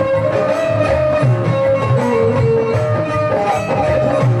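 Instrumental break in a live Haryanvi bhajan: a melody instrument plays a held tune that steps in pitch, over a steady percussion beat.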